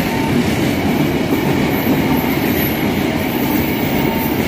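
Tank wagons of a fuel freight train rolling past close by, a steady rumble of steel wheels on the rails.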